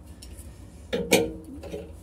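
Light metal clinks of a gas bubble tester and compression fittings being handled against a copper gas pipe, with one sharp click about a second in, over a faint low rumble.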